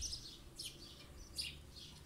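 Small birds chirping faintly: a string of short, high chirps, about two or three a second.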